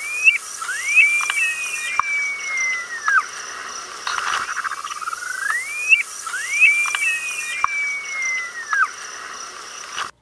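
Upland sandpiper singing its song twice. Each song is a bubbling run that rises into an upswept whistle, then a second upsweep and a long, slowly falling whistle, like a stretched-out slide whistle. The second song begins about four seconds in.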